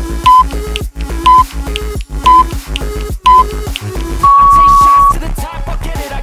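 Countdown timer beeps over background music: four short beeps a second apart, then one long beep about four seconds in, signalling the end of the rest period and the start of the next exercise.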